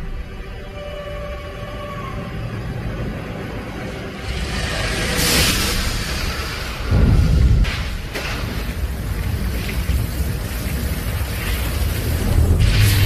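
Film score music over deep low rumbling effects, with a hissing swell about five seconds in and a heavy low hit about seven seconds in, followed by a few short sharp strikes.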